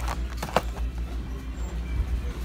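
Handling noise of a boxed G.I. Joe action figure: a few sharp clicks and knocks of its cardboard-and-plastic package, the loudest about half a second in, over a steady low hum.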